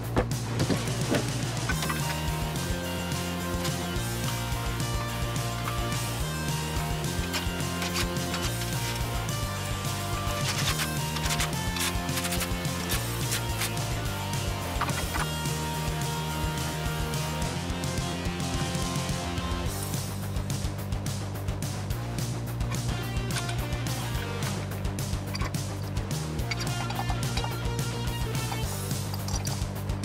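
Background music with sustained bass notes that change every second or two, the beat growing busier about two-thirds of the way through.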